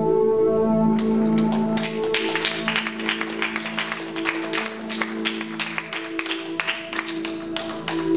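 Electronic music with sustained synthesizer chords. Dense, irregular clicking and crackling percussion comes in about a second in and runs over the held chords.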